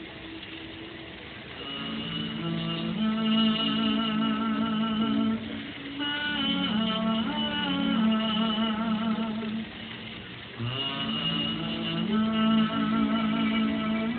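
A woman singing a slow melody with vibrato over an instrumental accompaniment, in long held phrases with short breaks about five and ten seconds in.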